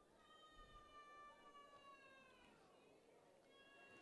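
Near silence, with a faint high-pitched note, rich in overtones, held and slowly falling in pitch for about two and a half seconds; a second faint note comes near the end.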